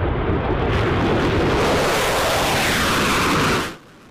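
F-16 fighter jet flying past, its jet engine making a loud, continuous rushing noise with a tone that sweeps downward as it goes by. The sound cuts off abruptly near the end.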